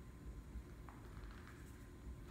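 Quiet room tone with low hum, broken by one faint click about a second in.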